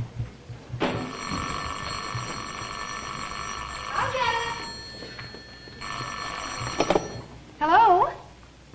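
Telephone bell ringing twice: one long ring of about four seconds, then a second ring that is cut off after about a second as the call is answered.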